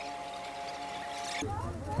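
A steady electronic alert tone of two close pitches sounding together, which cuts off about one and a half seconds in; a voice starts just after.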